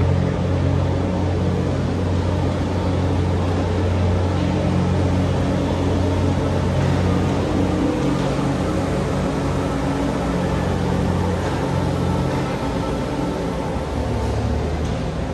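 A steady low machine hum with several stacked low tones, over a constant noisy background.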